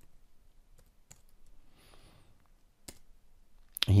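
A few isolated computer keyboard keystrokes, the loudest about three seconds in, as a console command is finished and entered. A soft hiss around the middle.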